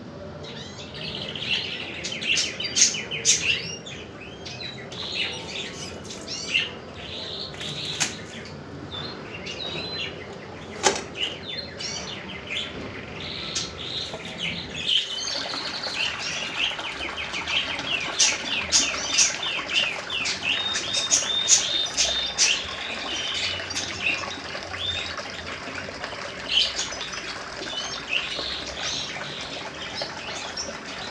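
Many small birds chirping and twittering, a dense run of quick overlapping chirps, with a single sharp click about eleven seconds in.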